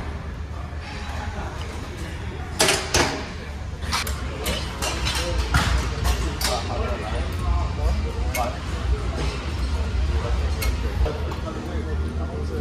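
Metal clinks and clanks of gym weights and machines: two loud sharp clinks about two and a half seconds in, then scattered lighter ones, over a steady low hum and background voices.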